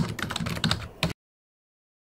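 Rapid clicking of computer-keyboard typing that stops abruptly about a second in.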